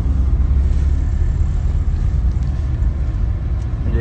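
Steady low rumble of a car driving, engine and road noise heard from inside the cabin.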